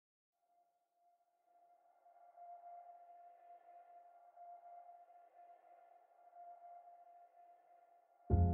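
Faint, steady electronic drone: one held tone with a few overtones, gently swelling and fading, laid under still title cards.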